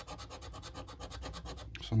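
A coin edge scraping the latex coating off a scratch card in rapid, repeated back-and-forth strokes.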